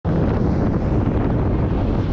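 Wind buffeting the microphone of a camera on a moving vehicle: a loud, steady rush with vehicle noise beneath it.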